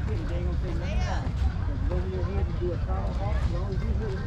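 Unintelligible voices of players calling out across a baseball field, over a steady low rumble on the microphone.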